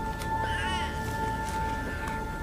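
A baby's brief, high, wavering whimper about half a second in, over a steady sustained note of soft background music.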